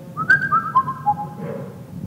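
A short phrase of clear, steady high tones stepping down in pitch, four or five notes within about a second, each note still sounding as the next begins.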